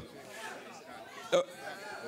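Indistinct background chatter of several people talking at once, with one short, loud vocal sound close to the microphone about one and a half seconds in.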